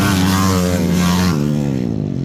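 Motocross dirt bike racing past close by, its engine note loud and steady, then dropping sharply in pitch about two-thirds of the way through as it goes by.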